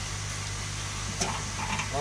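Steady fizzing hiss of aerated water bubbling in a fish-holding tub, over a low steady hum. There is a sharp click at the start, and faint voices come in during the second half.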